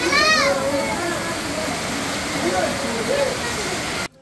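Heavy rain pouring steadily, with water streaming off a tarpaulin onto wet concrete. Several voices shout and call over it, loudest near the start.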